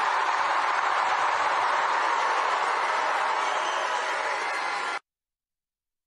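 A large crowd cheering and applauding, a steady dense noise that cuts off abruptly about five seconds in.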